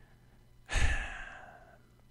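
A man sighing into a close microphone: one breathy exhale about two-thirds of a second in that fades out over about a second, over a faint steady low hum.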